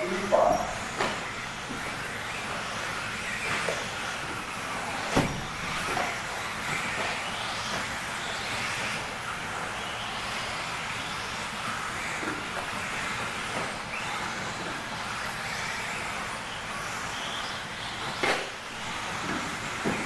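A field of 1/10-scale 2WD electric buggies with 17.5-turn brushless motors racing on an indoor dirt track: a steady mix of motor whine and tyre noise that rises and falls with throttle. There are two sharp knocks, about five seconds in and near the end.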